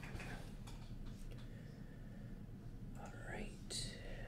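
A person's voice speaking very softly, close to a whisper, over a low steady room hum, with a short rising sound and a brief hiss near the end.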